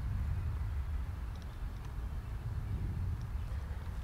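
Low, uneven background rumble with a couple of faint ticks.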